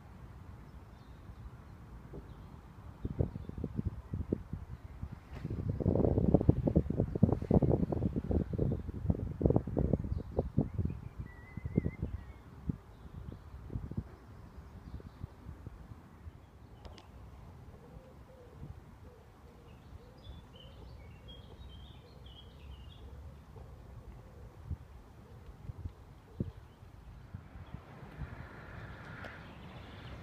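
Rustling and bumps for several seconds as a person climbs and settles into a camping hammock. This is followed by quieter woodland ambience with a few faint bird chirps.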